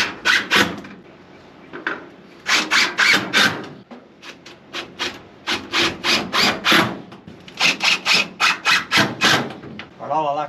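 Hand-held metal cutters (tin snips) cutting sheet metal: groups of quick, scratchy snips, two or three a second, with short pauses between the groups.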